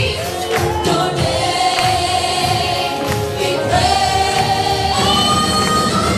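A worship team singing a gospel song together in harmony, holding long notes, backed by a live band with keyboard and guitar.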